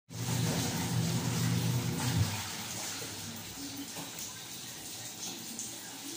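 Water sloshing in a plastic basin as clothes are scrubbed and rubbed by hand in soapy water. A steady low hum sounds for the first two seconds, then stops.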